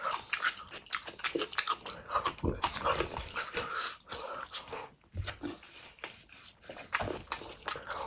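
Close-miked wet chewing and lip-smacking of rice and spicy fish curry eaten by hand, in a quick, irregular run of sticky clicks and smacks that thins out around the middle.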